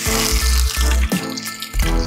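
Hot oil with cumin seeds sizzling hard as a yellow ingredient is dropped into the pan, the hiss loudest in the first second and then settling to steady frying, with background music and its pulsing bass throughout.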